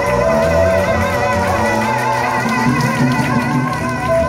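Live band music: guitar and bass playing under a singer's wavering, vibrato-laden held notes.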